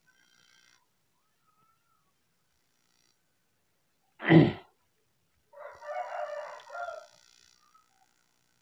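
A sudden loud burst about four seconds in, then a rooster crowing for about two seconds.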